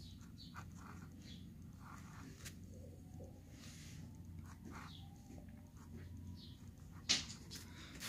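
Faint scratching strokes of a ballpoint pen writing numbers on paper, over a steady low hum, with one sharp click near the end.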